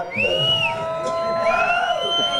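Audience members whooping and whistling: several long held high calls overlap, one of them rising and falling twice.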